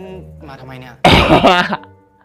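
A man laughs loudly in a sudden burst about a second in, after a stretch of quieter drama dialogue.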